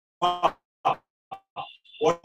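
A man's voice in a few short, clipped bursts with hard silence between them, like speech chopped by a call's noise gate. A brief high, thin tone comes near the end.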